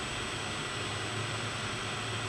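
Steady room tone: an even hiss with a low hum beneath it, and nothing else happening.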